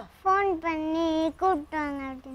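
A child singing a short phrase in long, steady held notes, with a brief break about halfway through.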